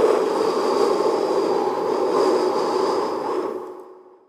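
A loud, steady rushing noise with a faint high tone running through it, fading out near the end: a sound effect laid over an edit transition.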